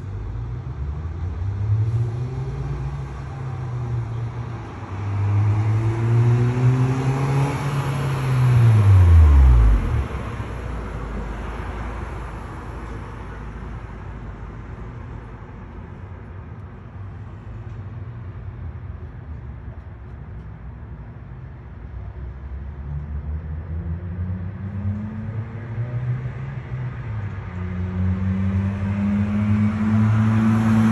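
Cars driving past on a city street, their engine pitch rising as they approach and dropping as they go by. The loudest passes about nine seconds in with a sharp fall in pitch, and another vehicle comes closer near the end.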